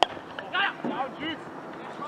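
A cricket bat striking the ball once with a sharp crack, followed by players' raised voices shouting as the batters set off for a run.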